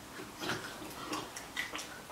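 Faint, irregular clicking of a hand-turned spice mill being twisted over a plate.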